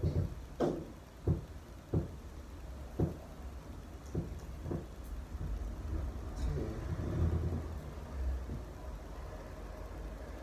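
Movement noise from a person practising tai chi: a run of soft knocks, several under a second apart, in the first half, over a steady low rumble that swells a little near the end.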